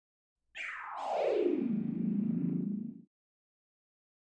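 Electronic intro sound effect: a whooshing tone that glides steeply down in pitch, settles into a low hum and stops suddenly.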